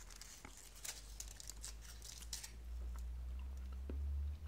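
Foil candy wrapper crinkling and crackling in the fingers as a small chocolate is unwrapped, most of it in the first two and a half seconds, followed by a low rumble.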